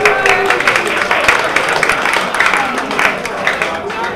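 Audience clapping in a hall, with some voices mixed in.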